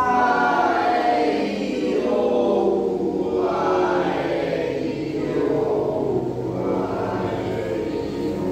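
A group of voices vocalizing together as a vocal warm-up: sustained tones that slide slowly up and down in pitch, coming in abruptly at the start.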